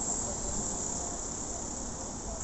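Busy city street ambience heard while walking: a low rumble of traffic under a steady high-pitched hiss.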